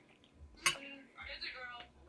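A metal fork clinks once, sharply, against a dish about two-thirds of a second in, during a bite of food; the rest is quiet.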